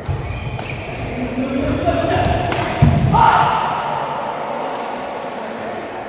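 A badminton rally with sharp racket strikes on the shuttlecock and thudding footwork on the court. The loudest strike comes a little under three seconds in, with raised voices shouting around it as the rally ends.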